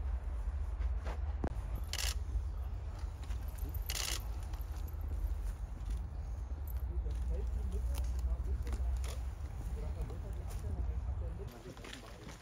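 Outdoor ambience with a steady low rumble and faint, indistinct voices, broken by two short hissing rustles about two and four seconds in; the rumble stops shortly before the end.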